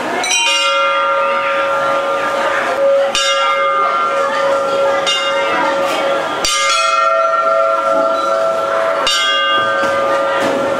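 Hindu temple bells struck four times, roughly every three seconds. Each strike rings on with a long steady metallic tone, over the murmur of a crowd.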